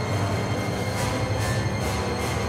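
Dramatic background score: a steady low rumbling drone with faint regular beats, laid under reaction shots.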